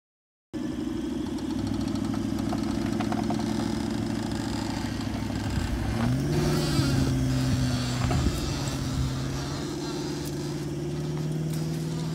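4WD engine under load towing a caravan out of soft sand where it had been bogged. The engine note steps up about halfway through as the driver gives it more throttle, then holds steady.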